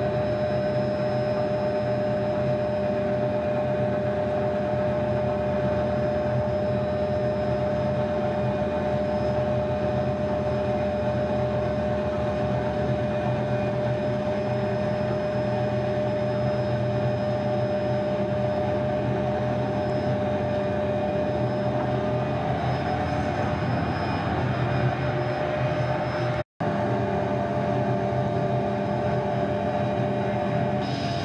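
Hughes 500 helicopter cabin noise in flight: the turboshaft engine and rotors make a steady drone with a constant high tone over it. The sound drops out completely for an instant near the end.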